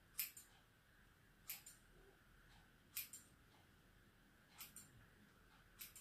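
Haircutting scissors snipping through long hair: five crisp snips, about a second and a half apart.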